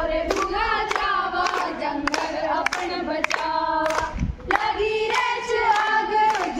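A group of young women singing together in unison without instruments, clapping their hands in a steady beat of roughly one clap every half second or so.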